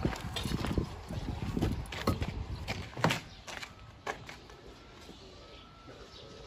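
Footsteps on a dirt path, about two a second, with knocks from a handheld camera being carried. They fade out about four seconds in.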